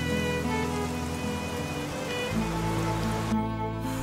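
Soft dramatic background music of long held notes over steady rain falling on pavement; the rain noise cuts off near the end, leaving only the music.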